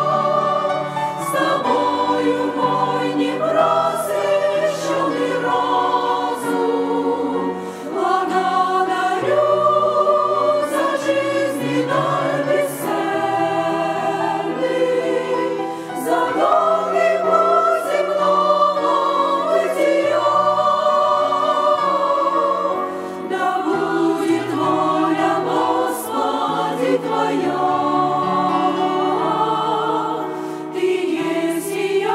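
Women's choir singing a hymn in parts, with held notes and steady phrasing.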